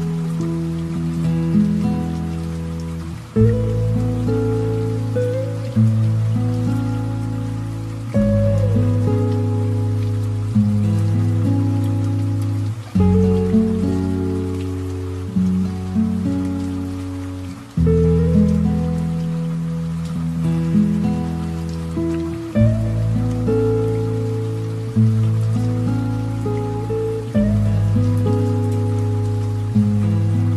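Slow, soft piano music, a new chord with a low bass note struck about every two and a half seconds and left to die away, over a steady layer of light rain sound.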